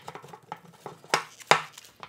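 Small plastic clicks and ticks as a static mixing nozzle is twisted onto a two-part epoxy cartridge, with two sharper clicks a little past the middle.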